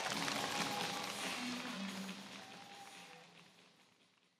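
Crowd applause over music, the two fading out together over about three seconds.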